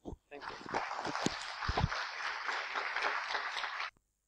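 Audience applauding, starting about half a second in and cutting off abruptly just before the end, with a couple of low thumps in the middle.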